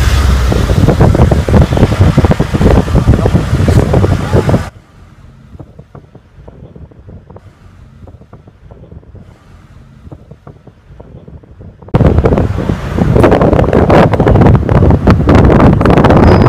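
Heavy wind buffeting on a phone microphone from a moving car, a loud low rumble. It cuts off abruptly about five seconds in, leaving a much quieter stretch, then comes back just as suddenly about twelve seconds in.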